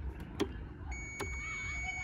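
A TVS iQube S electric scooter being switched into ride mode: a few sharp clicks from the handlebar mode switch and brake lever, then about a second in a steady high-pitched electronic tone sets in and holds as the scooter arms for riding.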